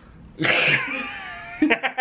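A man's high, drawn-out yelp that falls in pitch, starting about half a second in and lasting about a second, followed by bursts of laughter near the end.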